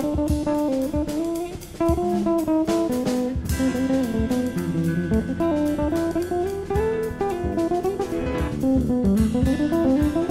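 Live jazz ensemble playing: a plucked-string melody line moving up and down over bass and drum kit.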